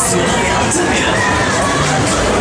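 A crowd of riders screaming and shouting together as a giant swinging-pendulum thrill ride swings them high, with fairground music underneath.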